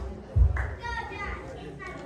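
Children's and other voices chattering in a hall, with a dull low thump about half a second in.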